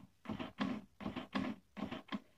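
HP LaserJet 100 color MFP M175nw's internal mechanism running after its front door is closed: a series of about five short, evenly spaced mechanical pulses.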